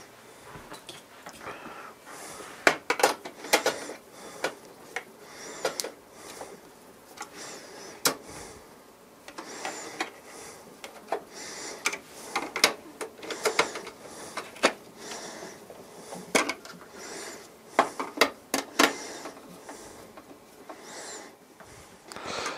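A screwdriver at work while the top cover of a PC case is fitted and screwed down: irregular sharp clicks and taps of metal parts, with short scrapes between them.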